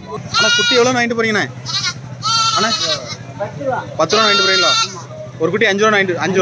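Goats bleating: three long, loud calls, each about a second long, with a wavering pitch.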